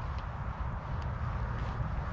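Outdoor background in a pause between words: an uneven low rumble of wind buffeting the microphone, with a faint click or two.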